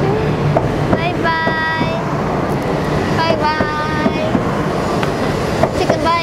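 Shinkansen bullet train pulling out along the platform, a steady rolling rumble. Two short, steady high-pitched tones are held over it, about a second in and again past the three-second mark.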